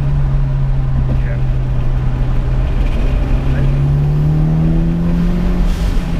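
Mitsubishi Lancer Evolution VIII's turbocharged four-cylinder engine heard from inside the cabin, pulling in gear on light throttle, its note rising slowly and steadily, with road rumble underneath.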